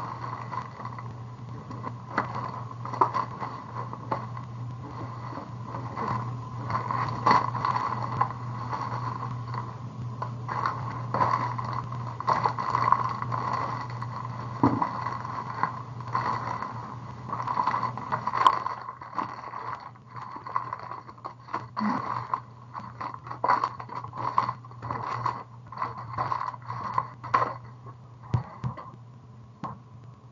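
Scattered clicks, knocks and scrapes of objects being handled, over a steady low hum.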